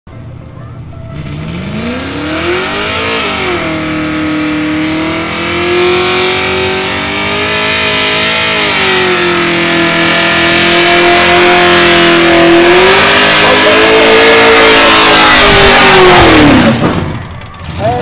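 A burnout car's engine held at high revs, spinning its rear tyres with a loud hiss of tyre noise over the engine note. The revs climb from about a second in, hover high with a few blips, and drop away suddenly near the end.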